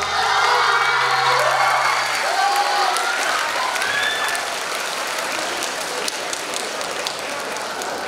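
A school hall audience applauding and cheering, with high shrill whoops rising and falling over the clapping in the first few seconds. The last low notes of the backing music die away about two seconds in, and the applause carries on, a little quieter.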